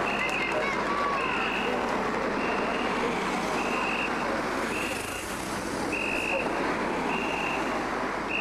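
Cars driving past on the road, a steady road noise, with a high electronic beep repeating about once a second throughout.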